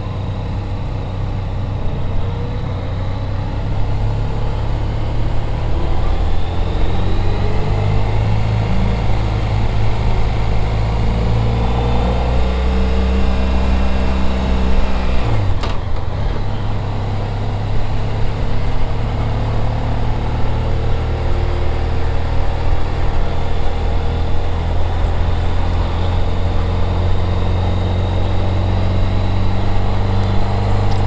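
Motorcycle engine running at low town-riding speeds, heard on board the bike: a steady low engine note that rises and falls gently with the throttle, with a brief break about halfway through.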